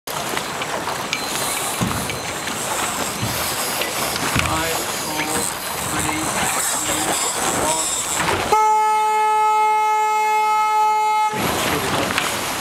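One long blast of a horn used as a sailing race signal: a steady pitched tone of nearly three seconds that starts abruptly about eight and a half seconds in and cuts off suddenly. Before it, wind and water noise.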